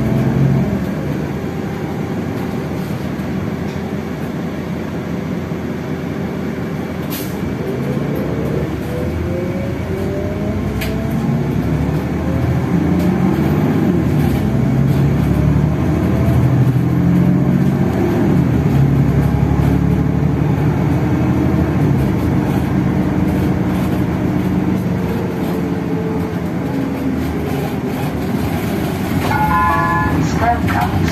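City bus heard from inside the passenger cabin while driving: engine and drivetrain running under road and tyre noise, with the pitch rising and falling as the bus accelerates and eases off. A short series of chime-like tones sounds near the end.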